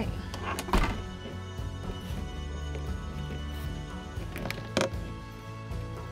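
Background music with a bass beat, over which a caravan's hinged acrylic window is swung shut: a thunk just under a second in and a second knock near the end.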